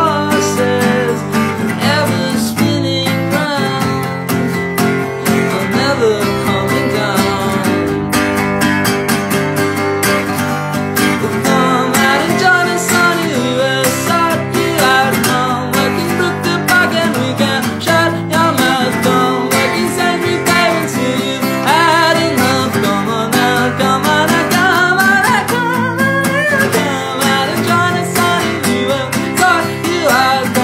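A young man singing solo, accompanying himself on a strummed acoustic guitar, with the voice wavering over steadily ringing chords.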